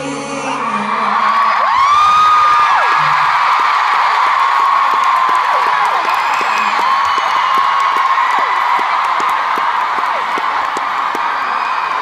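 Large arena crowd cheering and screaming as a song ends, many high-pitched shrieks over a steady roar, swelling in loudness about two seconds in.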